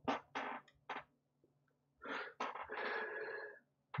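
Irregular bursts of rustling and clattering from small screws and parts being handled on a wooden table: a few short bursts in the first second, then a longer stretch near the middle, over a faint steady low hum.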